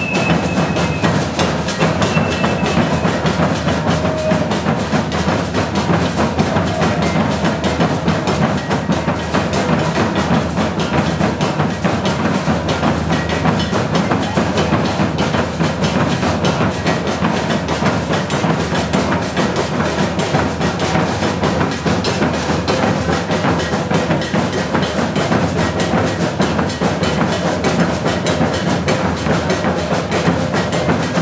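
Maracatu percussion ensemble playing a dense, driving rhythm, led by large rope-tuned wooden bass drums (alfaias) beaten with sticks over snare drums. The rhythm runs steady and loud throughout.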